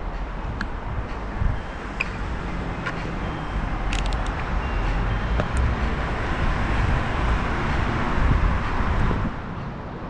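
Rumbling road noise of an electric scooter rolling over cobblestone paving, with a few sharp rattles and city traffic behind. It builds up through the middle and drops off about nine seconds in.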